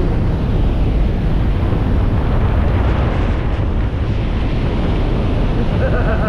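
Loud, steady rush of wind and propeller-plane engine noise inside the cabin of a small skydiving aircraft in flight, with wind buffeting the microphone.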